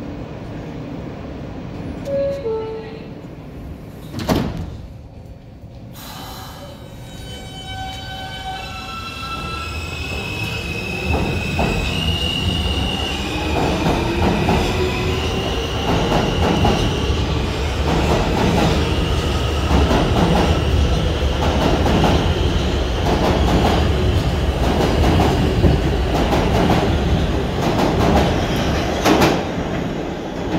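New York City subway train's door chime sounds in two falling tones and the doors close with a thump about four seconds in. The train then pulls out, its traction motors whining in stepped tones that climb in pitch as it accelerates. From about halfway through, the cars rumble past with a regular clicking of wheels over the rail joints.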